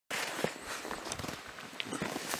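Footsteps crunching on packed snow, an irregular crackle with a few sharper crunches.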